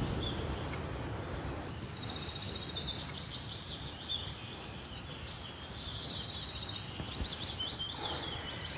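Small birds chirping and singing in repeated short, rapid high trills, over a steady outdoor background hiss.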